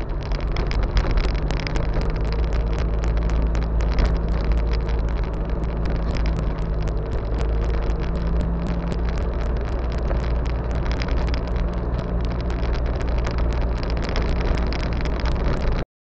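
Troller 4x4 driving on a dirt road: a steady engine and road rumble with dense, irregular clicking and rattling over the rough surface, cutting off suddenly at the very end.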